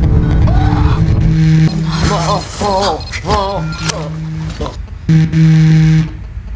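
A mobile phone vibrating against a desk for an incoming call, its buzz coming in repeated pulses of under a second with short gaps. In the middle it is joined by a wavering, warbling pitched sound and a thin high electronic whine.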